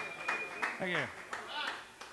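Small audience clapping with scattered claps and a couple of shouts or whoops, and a short, steady high whistle near the start.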